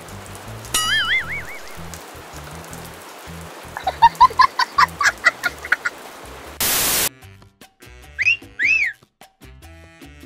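Background music with a low beat, overlaid with cartoon-style comedy sound effects. A warbling tone comes about a second in, and a quick run of rising chirps follows around four seconds. A loud burst of hiss comes near seven seconds, then two swooping whistle-like tones rise and fall.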